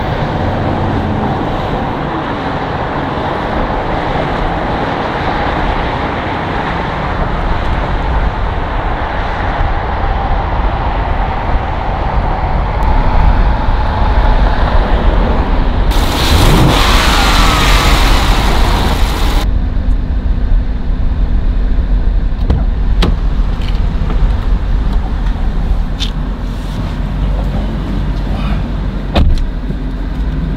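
The 2012 Dodge Charger SRT8 Super Bee's 6.4-litre 392 HEMI V8 running on the road, heard as steady engine and road noise. Just past halfway a brighter, hissier stretch comes in for a few seconds and cuts off suddenly, and a few sharp clicks come near the end.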